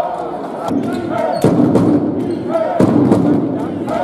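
Live basketball game sound in a sports hall: indistinct voices of players and spectators calling out, with a few sharp thuds of the ball bouncing on the wooden floor.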